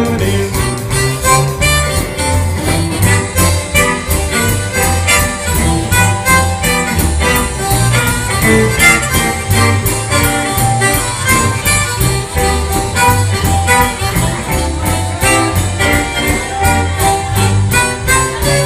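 A live band playing an instrumental break in a rock-and-roll/country number: electric guitars, drums and keyboard over a steady, even beat, with no singing.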